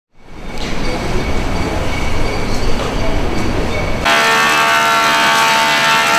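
A low rumble for about four seconds, then an abrupt change to a wood thickness planer running, a steady whine of several tones with a hiss of chips.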